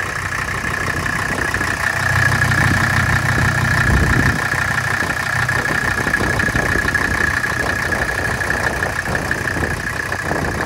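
Mercedes W123 diesel engine idling steadily after new valve stem seals, a valve adjustment and a fresh valve cover gasket. It grows somewhat louder for a couple of seconds around the middle.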